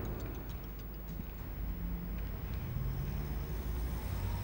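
Faint steady low hum and hiss, with a few soft held low notes near the middle.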